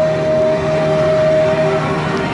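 The closing held note of a pop song performed live over a backing track: one long steady note with a lower chord under it, cutting off just before the end.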